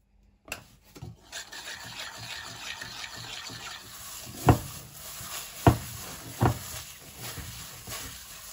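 A hand in a thin plastic glove working flour and liquid into dough in a stainless steel pot, giving a steady scraping rub. Three dull knocks stand out a little past halfway.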